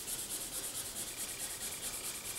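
Orange highlighter's felt tip rubbing on printer paper in quick back-and-forth colouring strokes: a soft, steady scratching.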